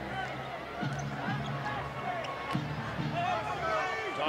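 Basketball arena sound during play: a basketball being dribbled on the hardwood court over crowd noise and arena music.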